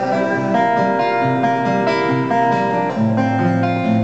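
Steel-string acoustic guitar playing an instrumental passage of chords with no voice, the chords changing every second or so.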